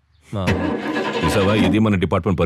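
Vehicle engine starting and then running, with a man's voice over it, beginning shortly after the start.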